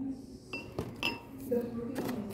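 Two light clinks of glass, about half a second apart, each with a short bright ring. Quiet talk sounds in the background near the end.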